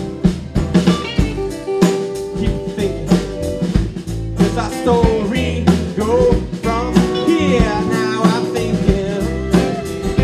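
Live Americana band playing an instrumental break: drum kit with regular cymbal and drum hits, bass, and strummed acoustic and electric guitar, with a lead line whose notes bend up and down.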